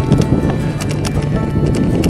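Background music over irregular crunching clicks of e-bike tyres rolling on gravel.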